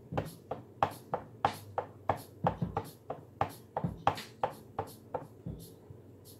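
Sampled drum loop playing back from a Roland SP-555 sampler, with shaker hits being overdubbed from its velocity-sensitive pads: a steady run of crisp hits about three a second, some with a kick underneath, thinning out near the end.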